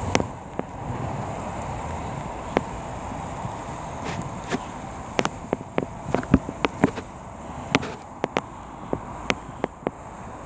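Irregular sharp clicks and taps close to the microphone, coming several a second between about five and seven seconds in and sparser elsewhere, over a low steady outdoor background rumble.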